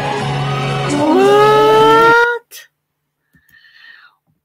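About two seconds of audio from a televised singing-performance clip: a loud, noisy burst with a rising, held voice over it, cut off suddenly when the clip is paused. Only faint traces follow.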